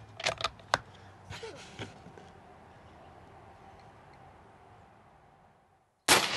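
A quick run of sharp metallic clicks in the first second as the Umarex Gauntlet .30 air rifle's bolt is cycled to chamber the next pellet, then faint outdoor background that dies away to silence near the end.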